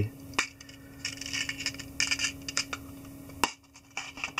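Small hard objects being handled as a fly-tying hook is fetched: a sharp click near the start and another near the end, with light rustling and small clicks between, over a steady low hum.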